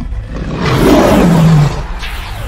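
A lion's roar, used as a sound effect: one loud roar starting about half a second in and lasting about a second, its low pitch sinking as it ends.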